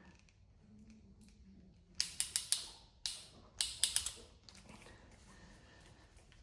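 IWISS iCrimp PEX clamp tool clicking in two quick runs of sharp clicks, about two and three and a half seconds in, as its jaws are worked onto a clamp ring on PEX pipe.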